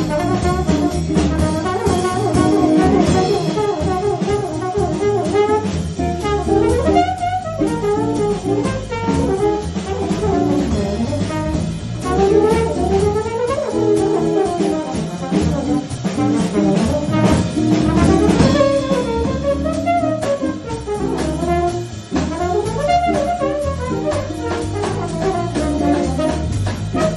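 ZO Next Generation plastic trombone playing a live jazz solo, melodic phrases that swoop up and down in pitch, over a small band with drum kit.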